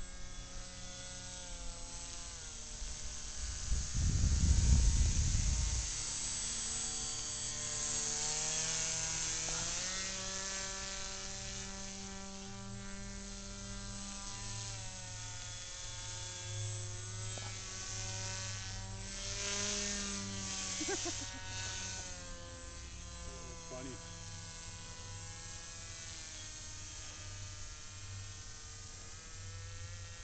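Brushless outrunner electric motor and propeller of an RC paraplane whining in flight, its pitch rising and falling several times. A loud low rumble comes about four seconds in.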